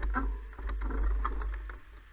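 Low wind rumble on the microphone, easing off near the end, with scattered light knocks and rattles over it.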